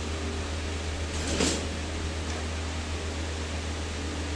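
Steady low hum throughout, with one short scraping rattle of a stainless steel grating panel being handled about a second and a half in.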